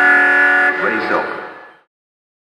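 A steady electronic horn-like tone sounds over the hall's loudspeaker, in the manner of a race-timing system's end signal. It cuts off abruptly under a second in, and a short gliding, voice-like sound follows before the audio fades out.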